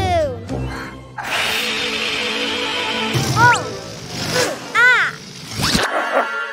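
Cartoon sound effects over children's music: a steady airy hiss of a balloon being blown up for about two seconds, then three short, high yips from the cartoon puppy.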